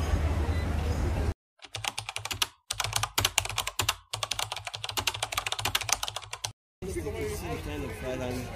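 Computer-keyboard typing sound effect: rapid key clicks in three quick runs broken by short dead-silent gaps, going with a caption typing onto the screen. Before and after it, street ambience with a low wind rumble.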